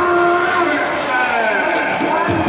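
Stadium public-address sound: an announcer's amplified voice drawing out a player introduction in long held syllables, over arena music and crowd noise.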